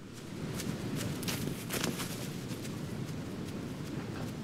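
Ambient sound design from the opening of a music video: a low rumbling noise swells in over the first second, with several sharp crackles scattered through it.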